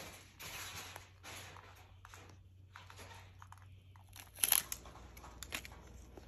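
Plastic packaging crinkling and tearing by hand, with a sharp loud crackle about four and a half seconds in and a few smaller snaps after it.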